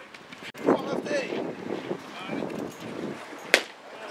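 Indistinct voices of players and people around a baseball field calling out, with light wind noise on the microphone. One sharp crack about three and a half seconds in.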